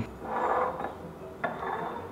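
Tall drinking glasses of milk being slid across a tabletop: a rubbing scrape in the first second, then a light knock and another short scrape about a second and a half in.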